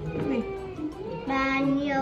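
A child singing, with gliding short notes and then one long held note in the second half.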